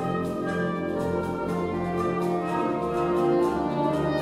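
Soprano saxophone playing over a wind band's held chords in contemporary concert music.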